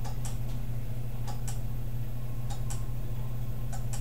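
A timing relay clicking in pairs about 0.2 s apart, repeating about every 1.2 s, as it switches the drive of a bicycle-wheel flywheel generator on for 0.2 s and then lets the wheel coast for a second. Under the clicks runs a steady low hum from the running machine.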